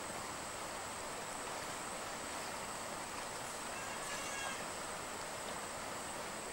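Steady rush of river water flowing through a wooden weir, with a faint high thin tone throughout and a brief faint chirp about four seconds in.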